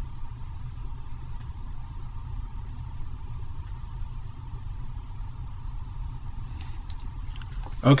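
Steady low hum of background room noise, with a few faint clicks shortly before the end.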